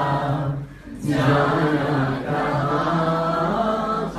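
A man singing a song live into a handheld microphone, breaking off briefly about a second in and then holding a long, steady sung line.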